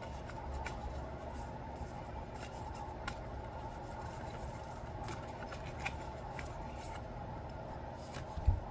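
A deck of round cards being shuffled by hand, with faint rubbing and scattered light clicks as the cards slide over each other, over a steady low background hum.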